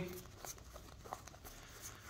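Panini Score trading cards slid one past another in the hands: a faint papery rustle with a few light ticks.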